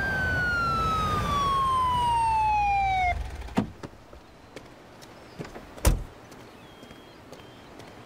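Police car siren winding down in one falling wail over about three seconds and then cutting off, together with a low engine rumble: the siren switched off once the car has pulled over. Afterwards a few short knocks and a sharp thump about six seconds in.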